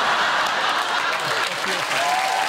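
Studio audience applauding steadily, with a few voices heard over the clapping.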